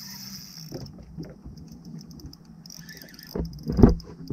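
Spinning reel being cranked against a hooked fish, its gears whirring with a fast ticking. Two heavy knocks come near the end.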